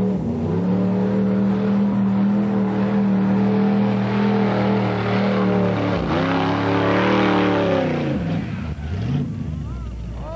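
Mud-bog pickup truck engine held at high, steady revs while driving through a mud pit. About six seconds in, the revs drop and climb again, then fall away near the end.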